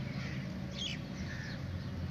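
Crows cawing: a few short, harsh calls, the clearest a little under a second in, over a faint steady low hum.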